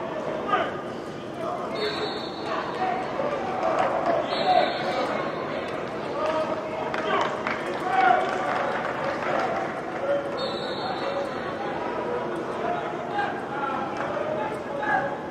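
Several men shouting and calling out over one another during a team drill, with scattered thuds of feet on turf.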